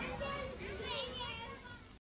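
Several children's voices calling and chattering over each other, high-pitched, fading out and then cutting off at the very end.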